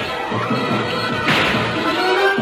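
Animated-series action soundtrack: a dramatic orchestral score, with a short, sharp sound-effect burst about a second and a half in.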